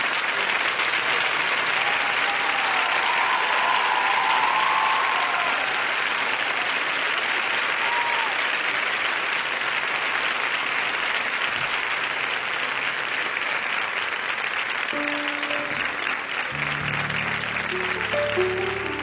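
A studio audience applauding steadily as a performer walks on. In the last few seconds a grand piano starts playing under the applause.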